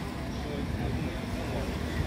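Street ambience: passers-by talking in the background over a low, steady rumble.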